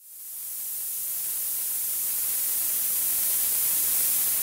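Generated blue noise: a steady hiss with its energy weighted to the high frequencies, closer to a hiss or a swish than a hum, fading in over about the first second.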